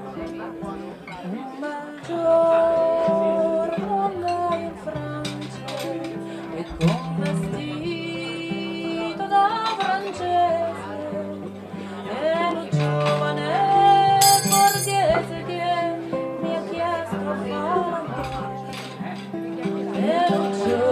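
An Abruzzese folk song played live on acoustic guitar and accordion, with a woman's voice singing the melody over the held chords.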